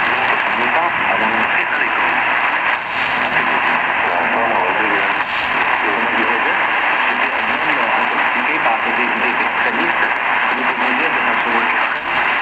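Shortwave broadcast heard through a Tecsun PL310ET portable receiver's speaker: a weak French-language voice from China Radio International on 13670 kHz, buried in steady loud static hiss.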